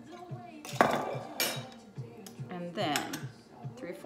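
A metal jigger and bottle clinking and knocking against a stainless-steel cocktail shaker as the measured triple sec goes in, with a sharp clink about a second in and a few lighter knocks after. Background music with a steady beat plays underneath.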